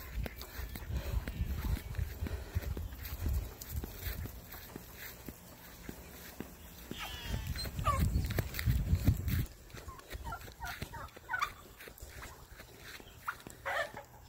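Chickens clucking and calling with short, scattered notes through the second half, over a low rumble in the first few seconds and again about eight seconds in.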